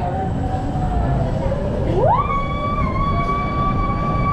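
Vekoma SLC suspended coaster train starting to roll out of the station, with a steady low rumble. About halfway through, a high tone glides quickly upward and then holds steady.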